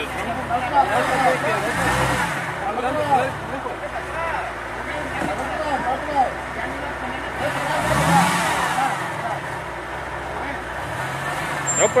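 Jeep Wrangler Rubicon engine revving briefly twice, about two seconds in and again about eight seconds in, under load as it tries to crawl over a tree root, with bystanders talking throughout.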